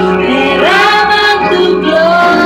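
A woman singing a Spanish song into a handheld microphone, her voice sliding up into long held notes, over musical accompaniment with a steady low held note.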